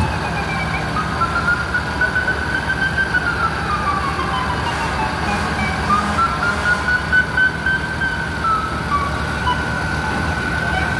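Vehicle siren wailing, its pitch slowly rising and falling over a few seconds per sweep, with a steady high tone beneath it and low street and engine noise.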